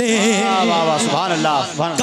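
A man singing a naat line into a microphone, drawing out the last word into a long, wavering note that slides down in pitch.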